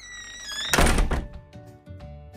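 A miniature schnauzer's short high whine, then a single loud thump about three-quarters of a second in. Light background music starts after it.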